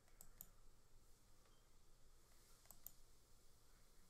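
Faint computer clicks over near silence: two quick pairs of clicks, about two and a half seconds apart.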